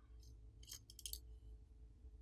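Near silence with a few faint light clicks as the smartphone's main board is lifted out of its frame.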